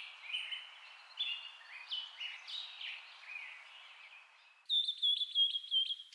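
Birdsong: a string of short, falling chirps over a faint hiss. About 4.7 s in it changes abruptly to a louder, rapid trill of repeated notes.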